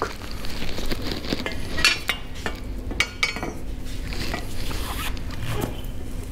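Steel motorcycle grab rails clinking as they are handled and set down side by side on the workshop floor, with a few sharp metallic clinks around two and three seconds in.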